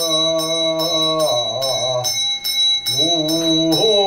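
A Buddhist monk chants in a long held voice that bends in pitch, dipping briefly near the middle. A small bell rings over the chant, struck in a steady rhythm of about two to three strokes a second.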